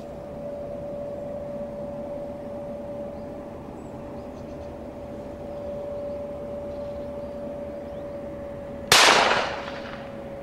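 A single double-barrelled shotgun shot near the end, sudden and loud, fading over about half a second, over a steady faint hum.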